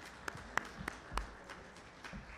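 Hands clapping in applause, sharp claps about three a second, dying away a little over halfway through.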